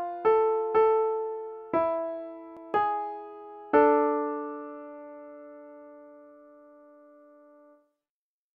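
Two-voice counterpoint played on a piano sound: a few last note pairs struck about a second apart, then the final cadence note pair held and fading for about four seconds before cutting off just before the end.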